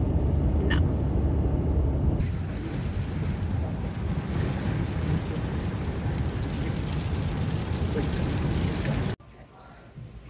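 A van driving on a highway, heard from inside the cab. A low engine and road rumble gives way after about two seconds to a steady hiss of tyre and wind noise. Near the end the sound cuts off suddenly to a much quieter background.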